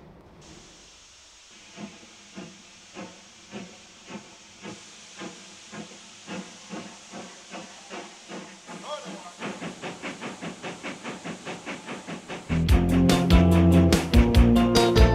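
Steam locomotive getting under way: a hiss of steam, then chuffs from about two seconds in, slow at first and quickening to about three a second. Near the end music comes in loudly over it.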